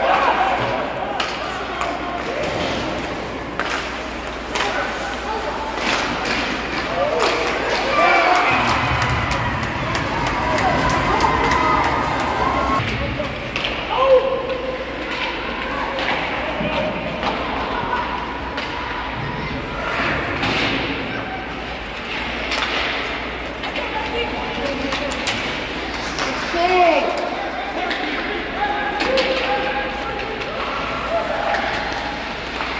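Ice hockey game in an indoor rink: scattered voices of players and spectators calling out, over sharp clacks of sticks and puck and thuds against the boards, with one louder knock about fourteen seconds in.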